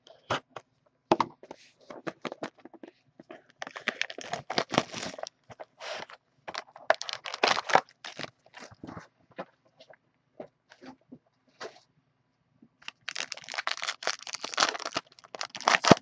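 Plastic shrink-wrap and wrapping on a trading card box being slit, torn and peeled off: a few sharp clicks at first, then bursts of crinkling and tearing, a quieter spell with scattered clicks, and a long burst of crinkling near the end as the wrapper comes off the cards.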